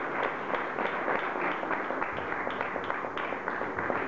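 Audience applauding steadily: many hands clapping at once.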